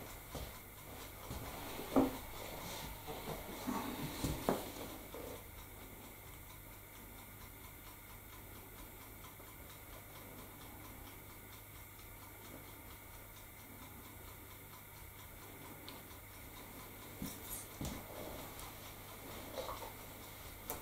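Quiet workroom with a steady low hum and a few faint knocks and clicks from things being handled at a workbench, about two and four seconds in and again near the end.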